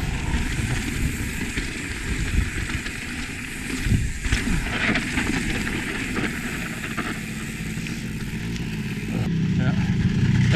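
Wind rushing over the camera microphone and mountain bike tyres rolling fast over a dry dirt trail, with sharp rattles and knocks from the bike over bumps about four and five seconds in.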